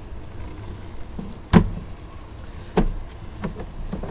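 A few sharp knocks over a steady low background noise, the loudest about one and a half seconds in and another near three seconds, from a sewer inspection camera's push cable being drawn back out of the line.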